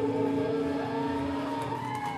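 Electric guitars left ringing and feeding back as a song ends: a few held notes, with a higher feedback tone that bends upward and starts to glide down near the end.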